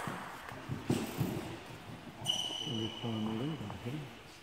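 Voices talking in a large hall, with a few light taps of a table tennis ball about a second in. A thin, steady high tone sounds for about a second and a half in the second half.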